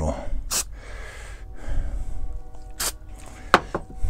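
A Rust-Oleum textured spray paint can giving short, light bursts of spray: a brief hiss about half a second in and two more near the end.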